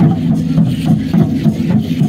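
Drumming and rattling from a Mexica danza group on the move: a steady low pulsing beat with many quick, sharp shaker and rattle clicks, over the voices of a crowd.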